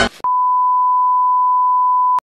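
Steady single-pitch test-tone beep of the kind played with TV colour bars, starting about a quarter second in, just after music cuts off.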